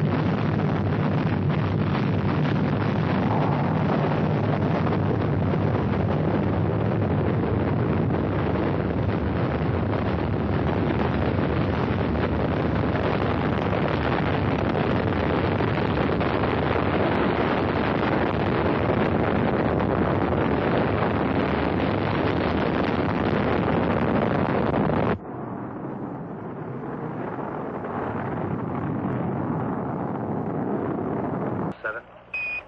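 Saturn IB rocket's first-stage engines at liftoff, a loud, steady rumbling roar of rocket exhaust. About 25 seconds in it drops abruptly to a quieter, duller roar.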